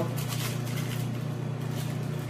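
A steady low hum under a light background noise, with no speech.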